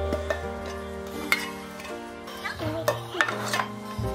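Background music, with a few short clicks and light clinks of a small empty metal tin being handled and set down among cables on a shelf.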